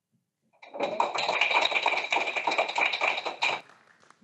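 Applause: about three seconds of hands clapping, starting about half a second in and dying away near the end.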